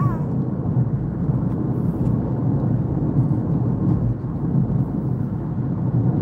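Steady low road and engine noise of a car being driven, heard from inside the cabin.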